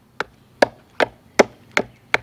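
Machete blade chopping into the end of an upright wooden stick: five quick, evenly spaced strikes, about two and a half a second. Each is a short, sharp knock that shaves an angled cut into the stick's end.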